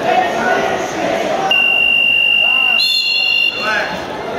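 Gym timer buzzer sounding one steady high tone for about two seconds, with a second higher tone joining just before it cuts off, over the crowd's voices and shouts.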